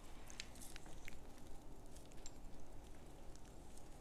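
Faint, scattered light ticks of paprika sprinkled by hand from above onto a foil-lined sheet pan of raw chicken and vegetables.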